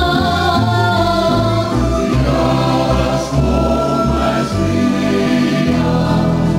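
Live folk ensemble music: a flute playing the melody over strummed and plucked acoustic guitars and a lute-type string instrument, with a group of male voices singing together.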